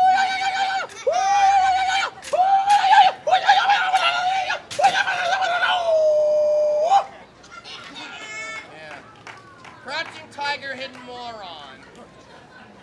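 A person's high-pitched mock crying: five or six long, held wails over about the first seven seconds, then only quieter voices.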